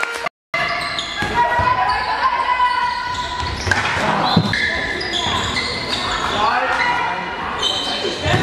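Indoor handball play in a reverberant sports hall: a handball bouncing, sports shoes squeaking on the hall floor, and players calling out. The sound cuts out completely for a moment just after the start.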